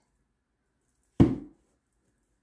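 A single short knock, a little over a second in.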